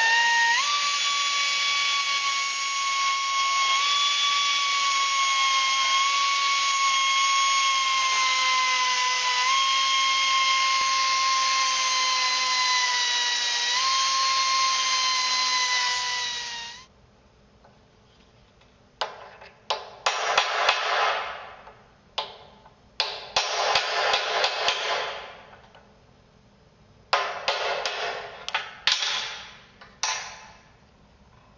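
Small handheld cut-off grinder grinding a steel key out of a blade adapter's keyway: a steady high whine that sags slightly in pitch under load and recovers twice, running for about 17 seconds before cutting off suddenly. After that come several short bursts of noise with sharp knocks.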